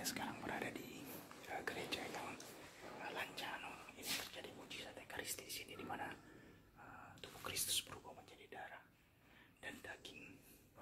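A man whispering quietly, with short pauses between phrases.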